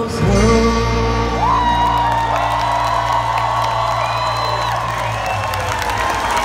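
Live rock band hitting a final chord that rings out and fades near the end, with the crowd whooping and cheering over it.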